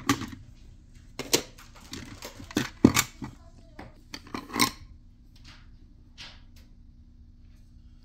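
Lacquerware coasters clicking against one another and tapping on a tabletop as they are lifted out of their holder and spread out, a series of light clicks through the first five seconds.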